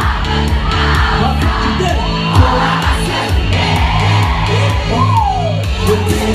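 Loud live pop music with a heavy, steady bass beat over a club sound system, with a crowd cheering and whooping along.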